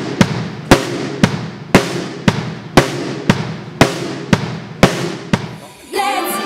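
A sparse, steady drum beat: one sharp hit about twice a second, each trailing off in a hissy ring.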